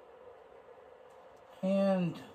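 Quiet room tone with a faint steady hum, then a man starts speaking near the end.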